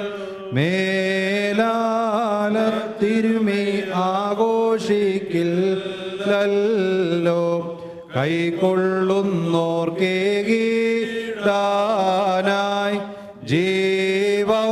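Liturgical chant for the funeral service: a single melodic vocal line sung in long, held phrases, with brief pauses for breath about half a second in, around the middle, and near the end.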